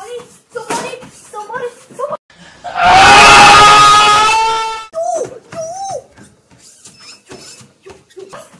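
A child's voice yelping and exclaiming, with one loud, held scream of about two seconds in the middle, from a child who cannot pause the treadmill he is running on.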